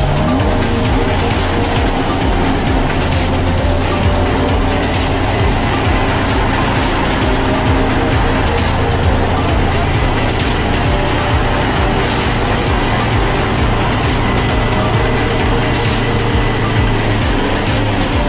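Vehicle engines running steadily under load as a pickup truck tows a heavy truck on a muddy dirt road, with a low, even rumble. Voices and music are mixed in.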